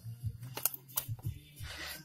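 A few light clicks and rustles of a cardboard box and its plastic packaging being handled.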